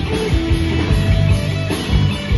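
A live rock band playing through a stage PA: electric guitars, bass guitar, keyboard and a drum kit, with a steady drum beat.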